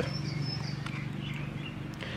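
Faint outdoor background between speech: a few short, high, thin chirps from a bird early on, over a steady low hum.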